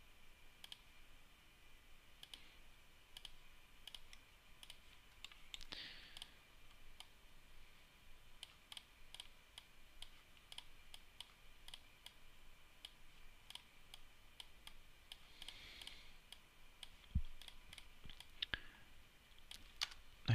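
Faint, scattered clicks of a computer mouse, irregular and frequent, over quiet room tone, with two slightly sharper clicks in the second half.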